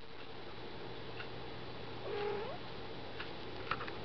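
A cat mews once, a short call about two seconds in that rises in pitch at its end. A few soft clicks follow near the end, over a faint steady hum.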